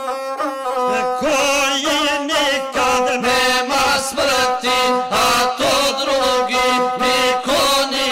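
A guslar chanting an epic song to his own gusle, the single-stringed bowed folk instrument. The wavering voice and the bowed string move together in short phrases that break about once a second.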